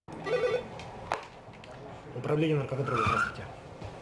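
A man speaking in short phrases into a desk telephone, with a single sharp click about a second in, such as a handset being lifted.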